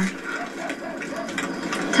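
Television sound picked up from the room during a pause in the dialogue: a faint pitched background over light, rapid clicking.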